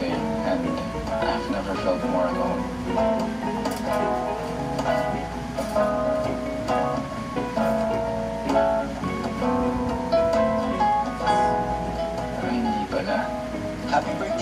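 A song with acoustic guitar and a singing voice.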